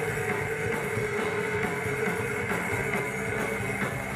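Live rap-metal band playing loudly on stage: electric guitar and drum kit in a dense, steady wall of sound.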